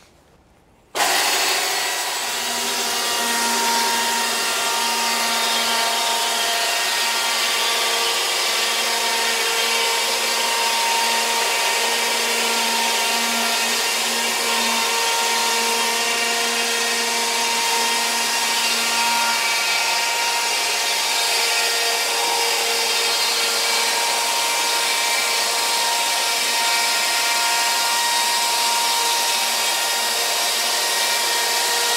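Electric chainsaw sawhead of a Logosol F2+ sawmill starting about a second in and running steadily along the log, ripping off a board only about a quarter of an inch thick.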